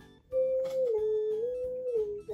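A child humming one long note that steps down, back up and down again in pitch, over quiet background music with a steady beat.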